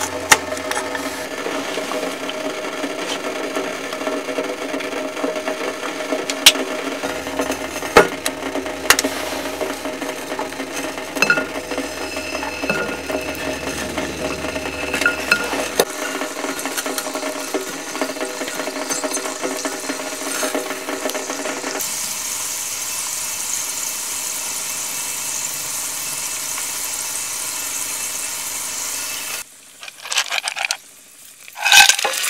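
Knife slicing garlic cloves on a wooden chopping board, a few sharp knocks over a steady hum. In the last third, garlic sizzling in hot oil in a wok, a steady hiss that stops abruptly just before the end.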